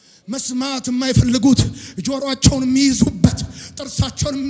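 A man's voice preaching loudly through a microphone in fast, rhythmic delivery with drawn-out vowels, starting after a brief pause.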